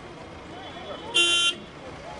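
A single short car horn toot, about a third of a second long, a little over a second in, over the chatter of people nearby.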